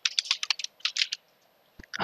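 Typing on a computer keyboard: a quick run of keystroke clicks for about a second, then a pause with a single click near the end.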